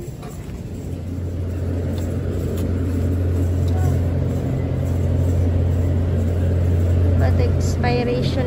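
Steady low hum of a supermarket's glass-door refrigerated milk case, its fans and cooling running, slowly growing louder while the door is held open.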